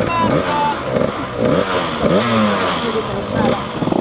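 Several small dirt-bike engines running, revved in repeated quick throttle blips so their pitch sweeps up and down, over a busy mix of engine noise.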